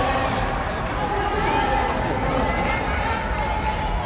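Footsteps of a pack of runners on an indoor track, with spectators' voices shouting and talking over them.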